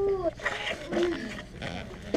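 A person's voice making a short wordless call that rises and then falls in pitch, followed by a fainter, similar call about a second later.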